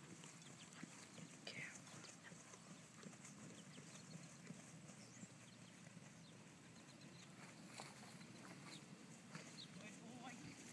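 Faint, soft hoofbeats of a Selle Français gelding moving over grass turf, an uneven scatter of dull knocks barely above the outdoor background.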